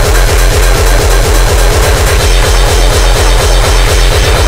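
Early hardcore dance music playing loud: a pounding distorted kick drum at about four beats a second, under a dense, noisy synth layer.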